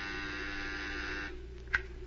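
A buzzer sound effect: a steady electric buzz for a little over a second that stops abruptly, followed by a single sharp click, like a switch. It is heard over the low steady hum of an old radio transcription recording.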